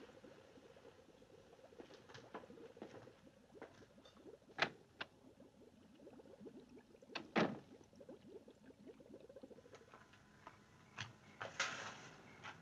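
Faint background hiss broken by scattered soft clicks and two sharp knocks a few seconds apart in the middle, with a louder knock or scrape near the end.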